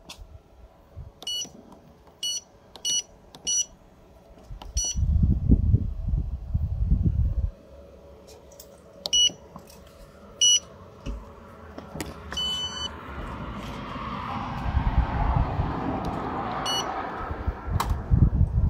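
Payment terminal's PIN pad beeping: a quick run of four short beeps and a fifth soon after, like key presses, then a few more single beeps, one of them longer about twelve seconds in. A low rumble comes in around five seconds, and a rushing noise builds over the last few seconds.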